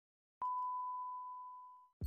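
A single electronic beep tone, a clean mid-pitched note, sounds with a sharp start about half a second in and slowly fades away over about a second and a half.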